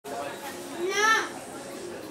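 Voices of people talking, with one loud, high-pitched call about a second in.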